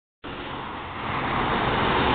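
Road traffic noise from a car passing on the street: an even wash of tyre and engine noise that grows steadily louder.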